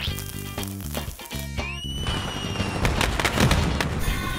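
Theme music with firework sound effects: a whistling rocket rises about one and a half seconds in, followed by a quick string of crackling firecracker bangs near the end.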